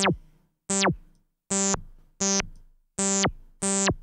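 Revolta 2 software FM synthesizer playing one note over and over as a low-pass pluck: five short plucks about three quarters of a second apart. Each starts bright and quickly dulls and dies away as the filter envelope closes the resonant low-pass filter. In the first notes the resonant peak can be heard zipping down.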